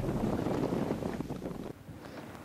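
Wind noise on the microphone outdoors, a steady noise that fades gradually and drops away abruptly near the end.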